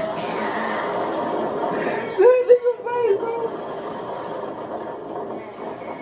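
Audio of an amusement-park slingshot ride clip playing from a TV: a steady rushing noise like wind buffeting the ride camera, with a voice breaking in about two seconds in for about a second.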